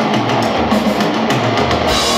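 Heavy metal band playing live: distorted electric guitars and bass under a steady run of drum-kit hits, loud and dense, picked up by a camera's built-in microphone. Right at the end the guitars move onto sustained held notes.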